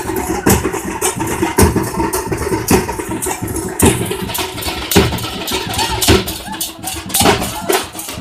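Large double-headed barrel drums beaten hard in rapid, uneven strokes, with the constant noise of a big crowd underneath.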